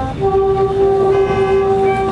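Marching band's wind section holding one long sustained chord that comes in just after the start, with higher notes joining about a second in.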